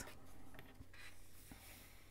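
Faint rustle of fingers and palms sliding over the paper of an open colouring book page.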